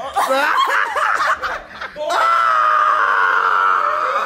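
Several people laughing and shouting at once, then a long, high-pitched scream held at one steady pitch for about two seconds from halfway through.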